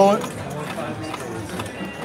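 Low background chatter and room murmur of a busy casino card room, after a nearby voice stops just as it begins.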